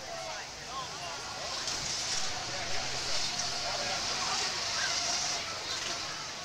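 A steady rushing hiss that swells from about a second and a half in and eases off near the end, with faint voices behind it.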